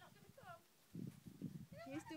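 Soft laughter and brief high vocal sounds from people, one short falling sound about half a second in and giggling near the end, over low rustling noise.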